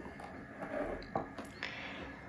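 Quiet room with a few faint, soft handling clicks and rustles.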